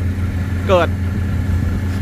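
Fire truck engine running steadily as a low, even hum while it drives the pump feeding the firefighters' hoses.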